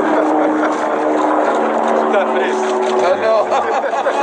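Several people talking over one another, with a steady mechanical hum under the voices that stops about three seconds in.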